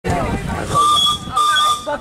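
Miniature steam locomotive's whistle blown twice, two short steady blasts of about half a second each, with a breathy hiss of steam. The first blast starts a little under a second in.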